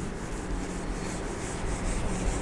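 A whiteboard duster rubbed back and forth across a whiteboard, wiping off marker writing in quick repeated strokes.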